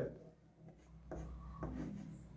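Chalk writing on a blackboard: faint scratching strokes that begin about a second in, in two short runs.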